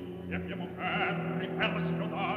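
An operatic voice singing with a wide vibrato over sustained orchestral tones, on an old mono recording with a muffled, narrow sound.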